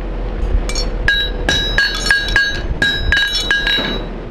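Farrier's hammer striking a horseshoe on an anvil: a quick run of ringing metal clinks, about five a second, beginning just under a second in.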